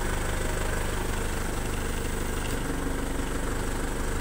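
Heli forklift engine idling steadily, heard from the operator's seat, while the mast tilt lever is worked.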